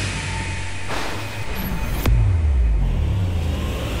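Dramatic TV background score of low held drone tones, with a whoosh about a second in and a sharp hit about two seconds in that drops into a falling low rumble.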